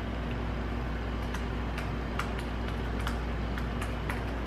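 Typing on a laptop keyboard: short, irregular keystroke clicks, a few a second, over a steady low hum.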